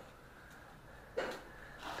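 Quiet room tone, then a person's short breath a little over a second in.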